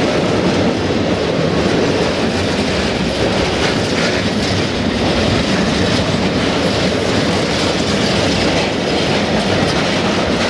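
Freight train of tank wagons rolling past close by: a steady, loud rumble of steel wheels on the rails, with occasional clicks of the wheels over rail joints.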